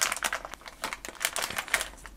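A clear plastic bag of LEGO pieces crinkling as fingers squeeze and sift through it, with the small plastic parts inside shifting against each other. The crinkling is busy at first and thins out after about a second.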